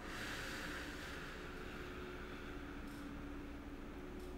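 A long audible exhale, a breathy hiss that fades out over about two seconds, part of slow deep breathing while holding a stretch. A faint steady hum lies underneath.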